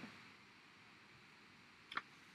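Near silence: room tone, with one short click a little before the end.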